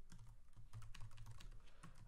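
Computer keyboard typing: a quick, faint run of keystrokes.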